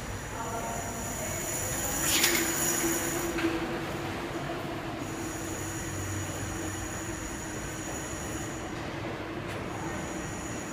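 New York City subway train heard echoing through the pedestrian tunnel: a steady high-pitched wheel squeal over a rumble, with a louder screech sliding down in pitch about two seconds in.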